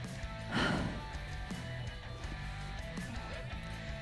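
Background music, with a brief rush of noise about half a second in.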